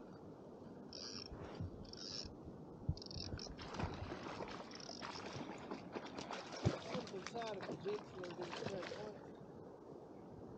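A hooked trout thrashing and splashing at the water's surface beside a packraft: a dense crackle of splashes from about three and a half seconds in until near the end.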